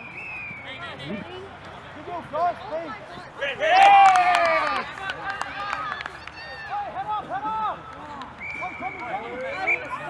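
Several voices shouting and calling to one another across an open sports field, overlapping and mostly unclear, with one loud burst of shouting about four seconds in.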